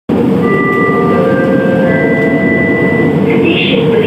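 LRT train running noise heard from inside the carriage: a steady rumble with a few thin steady tones over it. A recorded onboard station announcement voice begins near the end.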